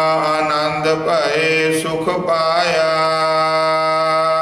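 Sikh kirtan: voices singing long held notes over a steady low drone, the pitch bending in the middle.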